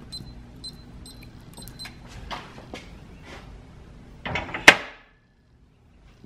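Electronic safe keypad lock beeping once with each key press as the new six-digit combination is entered, short high beeps with faint clicks between them. Then, about four and a half seconds in, a loud metallic clunk as the spoked handle is turned to work the bolts.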